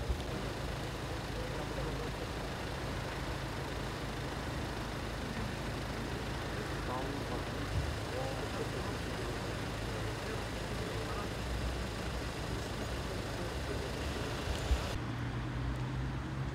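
Cars idling with a steady low engine hum, with faint indistinct voices in the background.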